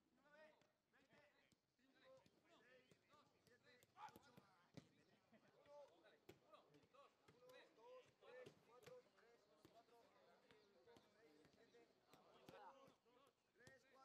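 Faint, sharp thuds of footballs being kicked in a quick passing drill, the loudest about four seconds in, with players' voices calling out here and there.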